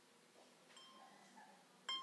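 Harp strings plucked: a few soft ringing notes about three-quarters of a second in, then one louder note near the end that rings on.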